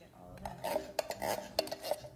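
Spoon clinking and scraping against a bowl of ice and fruit: a quick run of sharp clinks in the second half.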